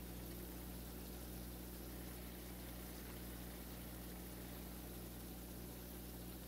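Grated carrots heating in sunflower and grapeseed oil in a pan on an electric stove, giving a faint, steady sizzle as the oil starts to bubble, over a low electrical hum.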